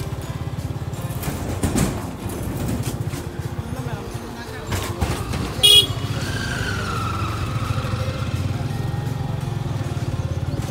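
A small vehicle engine running steadily, a low rapid pulsing throughout, with one short high horn beep just past halfway as the loudest sound.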